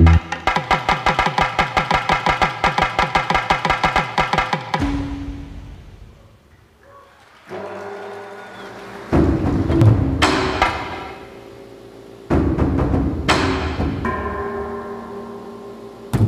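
Electronic music played live from gesture-sensing wristbands: a fast, even run of repeated pitched percussive notes that fades out about five seconds in. Then low sustained chords set in, punctuated by heavy drum hits about nine and twelve seconds in.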